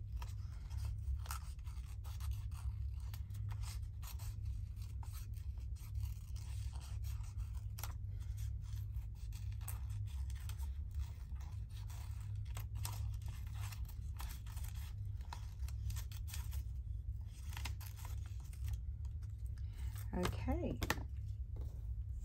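Small craft scissors snipping around a paper cutout in many short, irregular snips, with paper handling in between, over a steady low hum.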